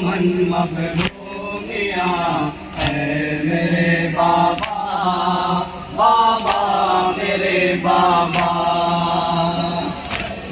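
A group of men chanting an Urdu nawha (Shia mourning lament) together in long, rising and falling sung lines. A sharp beat marks the chanting about every two seconds.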